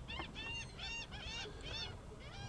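Several birds calling faintly in a quick string of short, rising-and-falling calls that overlap, about four or five a second.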